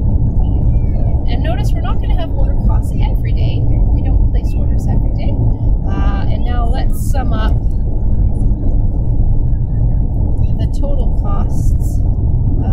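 A steady, loud low rumbling noise with faint, indistinct voices over it a few times.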